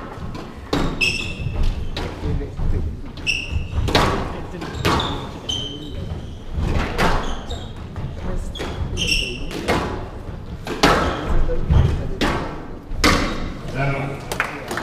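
Squash rally: the ball smacking off rackets and the walls every second or so, with short rubber shoe squeaks on the wooden court floor between the hits.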